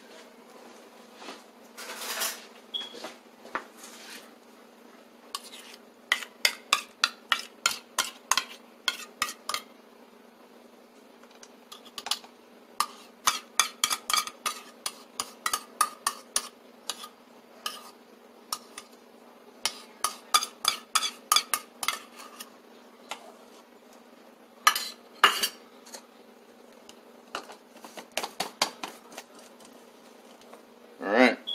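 A metal spoon scraping and clinking against a stainless-steel bowl while scooping out sour cream, in several runs of quick clinks and taps with short pauses between.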